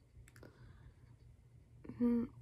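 Near silence: quiet room tone with two faint short clicks about half a second in.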